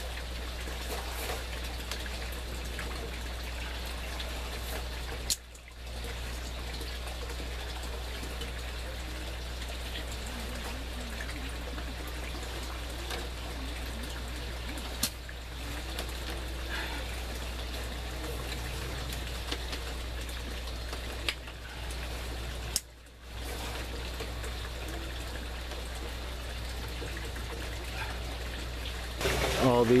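Water trickling steadily through the aquaponic grow-tower plumbing, over a low steady hum. The sound drops out briefly four times.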